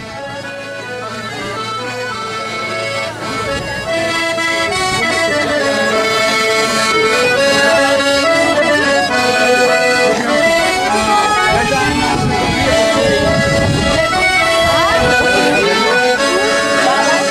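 Button accordions playing a traditional tune together, fading in over the first few seconds, with voices in the background.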